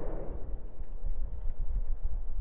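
Deep, steady low rumble with faint scattered crackles from a SpaceX Starship prototype's hop, heard on the launch footage.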